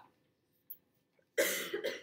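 A single cough, about a second and a half in, after a near-silent pause.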